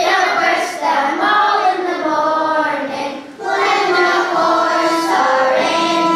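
A group of primary-school children singing a bothy ballad together, with a fiddle playing along. The singing breaks off briefly a little past three seconds in, then carries on.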